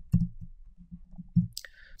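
Computer mouse clicks: a sharp click just after the start and another about a second and a half in, with faint low knocks between.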